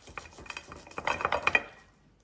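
A long knife sawing back and forth through a cooked beef roast, with short scrapes and clicks from the blade against the plate. The strokes come thickest and loudest about a second in, then stop shortly before the end.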